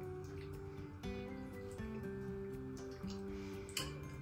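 Background music: a soft melody of held notes on what sounds like a plucked or keyboard instrument, at a low level.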